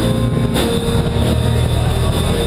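A live band playing, with a saxophone holding notes over a strong, steady bass.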